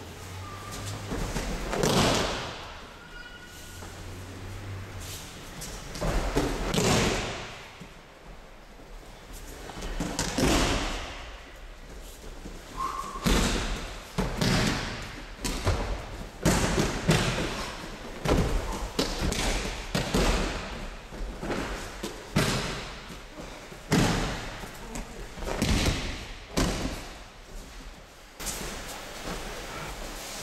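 Repeated thuds of aikido partners being thrown and landing in breakfalls on tatami mats. They come a few seconds apart at first, then about one a second in the second half.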